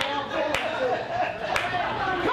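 Audience clapping in a club under a man talking into a microphone. Two sharp snaps stand out, about a second apart.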